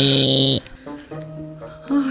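A woman's drawn-out vocal sound that cuts off about half a second in, then light background music with soft plucked notes.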